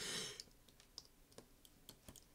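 A short breathy exhale into the microphone, then a few faint, sharp clicks.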